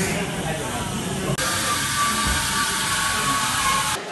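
Espresso machine steam wand hissing as it steams milk, starting suddenly about a third of the way in, with a faint whistling tone over the hiss, and cutting off at the end.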